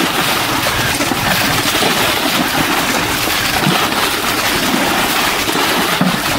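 Muddy water gushing and splashing as it is poured out of aluminium basins, in a steady, loud rush, while a puddle is bailed by hand.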